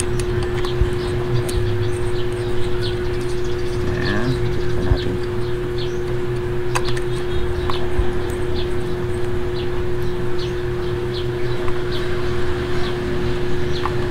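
A steady machine hum with a held tone runs throughout, with small scattered metallic clicks from a socket wrench turning the clutch spring bolts.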